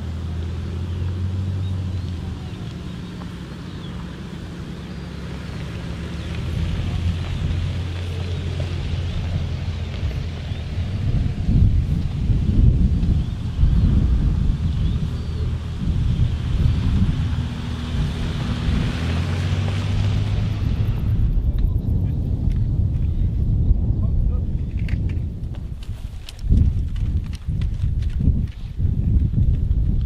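Several Mercedes-Benz G-Class (Wolf) military off-road vehicles driving past on a dirt track: a steady engine hum with a rougher rumble of engines and tyres that grows louder as they pass close. About twenty seconds in it gives way to a quieter scene with a few low thumps and faint clicks.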